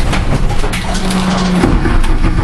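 Loud, rough engine and cabin noise inside a Renault Clio Cup race car just after it has crashed into the wall, with scattered knocks and a steady whine for under a second midway.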